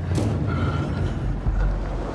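A motor vehicle's engine running with a low rumble, and a sharp sound just after the start.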